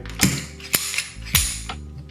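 Slide of an SCCY CPX-1 9mm pistol being worked by hand to clear the gun and check that the chamber is empty: three sharp metallic clacks about half a second apart, with a fainter click between the last two.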